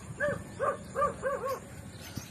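An animal calling five times in quick succession, each short call rising and falling in pitch, over about a second and a half.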